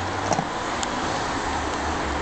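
A horse chewing a carrot, with a few short crunches, the loudest about a third of a second in and another near the middle, over a steady low rumble.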